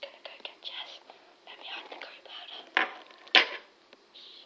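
Rustling and small clicks as a rose is handled, with soft whispering, then two sharp knocks close together near the end.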